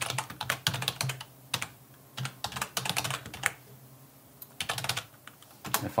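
Computer keyboard typing in quick runs of keystrokes, with a short pause a little after the middle.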